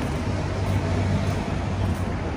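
Wind blowing across the camera's microphone: a steady low rumble and rush with no breaks.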